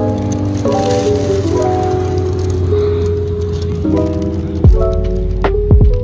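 Background music: held chords stepping from one to the next over a steady bass line, with deep drum hits that drop quickly in pitch coming in about three-quarters of the way through.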